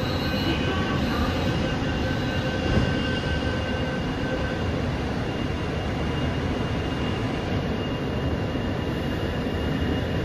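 Interior of a Mumbai Metro MRS-1 car (BEML stock, Hitachi SiC inverter drive with permanent-magnet motors) running between stations: a steady rumble of wheels on rail, with faint steady high whines. One of the whines fades out about four seconds in.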